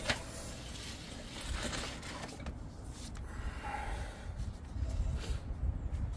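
Drain rods being worked through a sewage-filled manhole: faint water sloshing and scraping over a steady low rumble, with a few short knocks.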